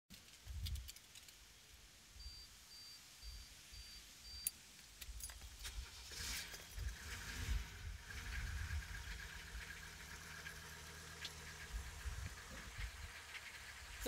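Keys rattling and a faint beeping for a couple of seconds, then the 1984 Mercedes-Benz 300D's turbo-diesel engine cranks about six seconds in and settles into a steady idle, heard from inside the cabin.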